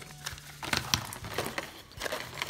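Cardboard marker packaging being handled and a box flap opened: a few light taps and rustles of card.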